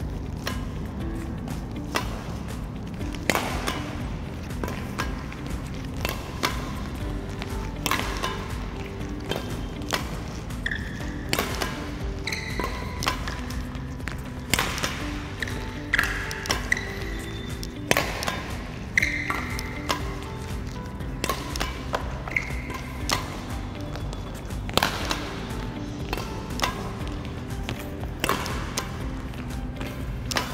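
Badminton rackets hitting shuttlecocks in a multi-shuttle drill: sharp, irregular hits every second or two as shuttles are fed and returned, with music playing throughout.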